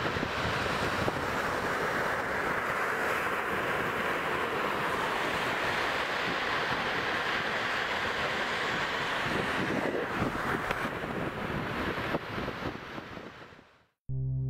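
A steady rushing noise, without any tone or rhythm, that fades out over the last couple of seconds.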